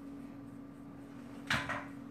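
Makeup brush wiped across a paper brush-cleaning sheet: mostly quiet, with one short swipe about one and a half seconds in, over a steady low hum.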